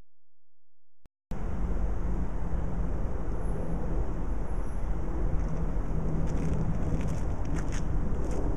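Steady outdoor noise, strongest in the low range, that starts suddenly about a second in after near silence.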